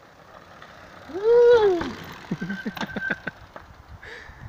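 A single rising-and-falling whoop from a cheering voice about a second in, then a quick run of sharp clatters and knocks as a mountain bike comes down off a fallen log.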